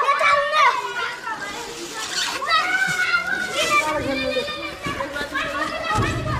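Children's voices shouting and calling out as they play.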